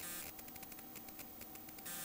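Faint rapid clicking, many ticks a second, over a low steady electrical hum and hiss.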